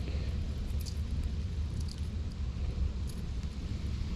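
Steady low rumble of wind buffeting the microphone, with a few faint light clicks.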